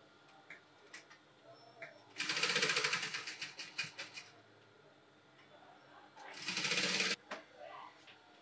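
Industrial sewing machine stitching in two short runs: about two seconds of rapid stitching starting about two seconds in, then a shorter burst about six seconds in.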